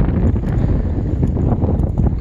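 Wind buffeting the microphone, a continuous low rumble.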